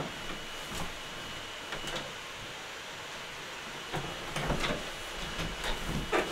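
Steady faint room noise with a thin high whine and a few light clicks, then, from about four seconds in, a run of thumps and rustling as a person sits down in a padded chair.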